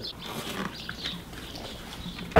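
A dog walking in off the doorstep, its claws ticking faintly on a tile floor as it pushes through a rustling mesh screen curtain.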